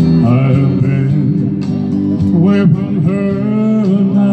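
A male singer singing live into a microphone over backing music, amplified through PA speakers.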